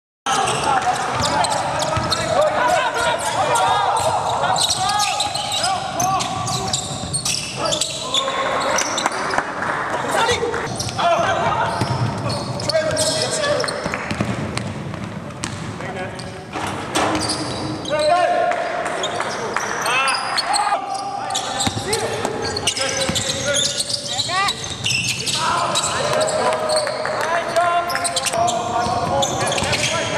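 Live court sound from a basketball game: the ball bouncing on a hardwood floor and players calling out in a large, echoing arena. It starts abruptly just after the beginning.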